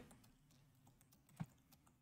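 Faint computer keyboard typing, a few soft key clicks, with one short low knock about one and a half seconds in.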